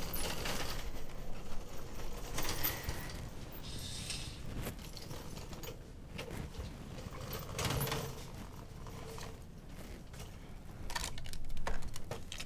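A metal instrument trolley being wheeled along, its frame and the supplies on it rattling, then items on it handled with light clicks, denser near the end.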